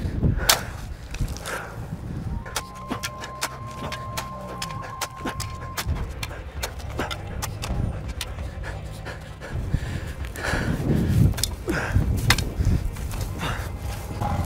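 A man breathing hard from exertion while beating out a grass fire with a shovel, with many sharp ticks and scrapes and wind rumbling on the microphone. Breaths stand out most about ten seconds in.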